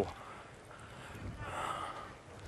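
Faint outdoor background noise with no clear single source, swelling slightly about a second and a half in.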